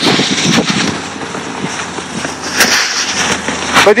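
Rushing, crackling noise of a car driving over a snow-covered road, picked up through an open window, with wind buffeting the microphone.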